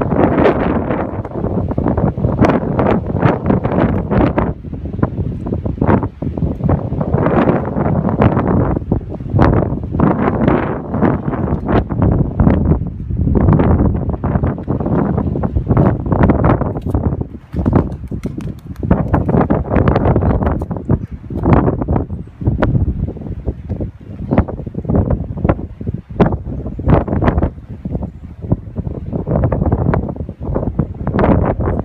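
Strong wind buffeting the microphone, loud and in irregular gusts.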